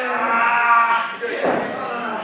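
A person's long, drawn-out shout held on one pitch for about a second, with a shorter vocal burst soon after.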